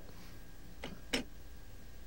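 Two short, sharp clicks about a third of a second apart, the second louder, over a faint steady room hum.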